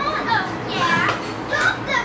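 Excited, high-pitched children's voices calling out, their pitch sweeping up and down, without clear words.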